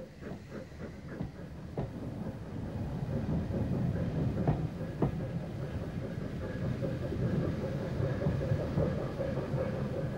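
Branch-line passenger coaches rolling past on jointed track, the wheels clicking over the rail joints. The sound grows louder over the first few seconds, then holds steady, with a few sharper clicks.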